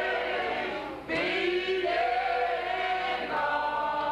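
A group of men singing together in long held notes. The singing dips briefly about a second in, then a new phrase begins.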